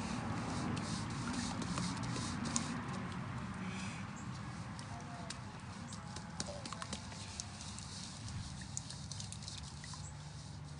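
Hands patting and pressing a mound of wet sand, a scatter of soft irregular pats, over a low steady background rumble.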